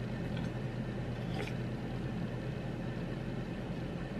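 Steady low background hum of room noise, with one faint, brief sound about a second and a half in.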